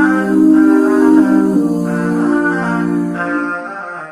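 Vocal-only nasheed: layered, effects-processed voices holding sustained chords with no instruments, the chord shifting about a second and a half in and easing off slightly near the end.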